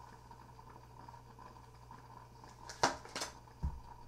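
Tarot cards being handled as a card is taken from the deck: two or three sharp card clicks about three seconds in, then a soft low thump, over a faint steady hum.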